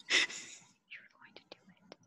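A short, breathy, whisper-like laugh near the start, followed by a few faint clicks.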